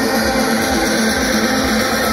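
Music from a stage sound system over the steady noise of a large outdoor crowd, between one track and the next.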